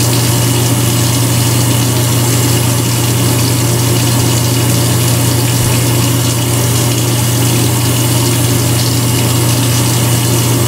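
Steady low machine hum with an even hiss over it, unchanging throughout.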